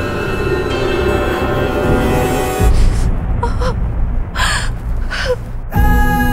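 Tense, scary drama-score music with deep low hits. In the thinner middle stretch, a woman gives three short pained gasps about a second apart, and a loud hit brings in a new swelling chord near the end.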